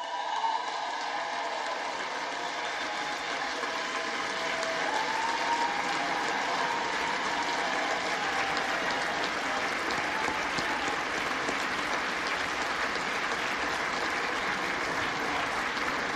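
Long, steady applause from a large crowd of House members clapping, with a few faint cheering voices in it during the first several seconds.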